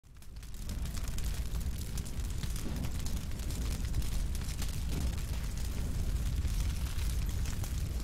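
Fire sound effect: a low, steady roar of flames with fine crackling over it, fading in over the first second.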